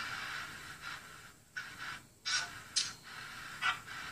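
Spirit box running on a phone, sweeping radio frequencies: choppy bursts of static hiss that break off and start again several times.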